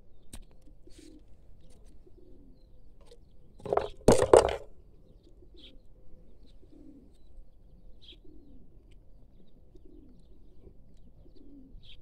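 A bird cooing over and over, faint and low, about once a second, with one loud, brief burst of noise about four seconds in.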